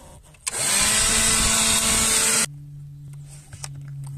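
Handheld electric vacuum or blower clearing debris out of the cabin air filter housing. Its motor spins up with a rising whine and rush of air, runs steadily for about two seconds, then cuts off suddenly. A quieter steady low hum follows.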